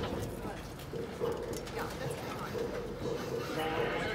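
Narrow-gauge passenger car rolling slowly on the rails: a steady rumble with uneven clacking of the wheels over the track, under indistinct passenger chatter.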